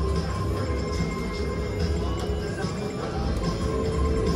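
Casino-floor ambience: music and steady electronic machine tones over a low, even din.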